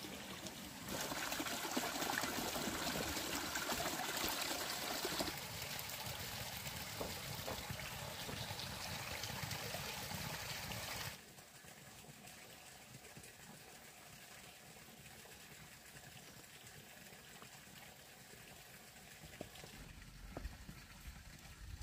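Running water trickling steadily, louder in the first half and dropping suddenly to a fainter trickle about eleven seconds in.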